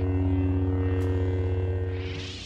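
Lightsaber sound effect from a custom-lightsaber promo's logo intro: a steady electric hum with a slight throb, easing off near the end.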